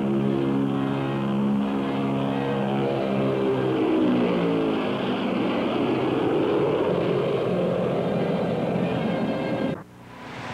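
Convair B-36 bomber's piston engines droning as the aircraft passes low overhead. The drone's pitch falls over the first few seconds, then settles into a steadier, rougher drone.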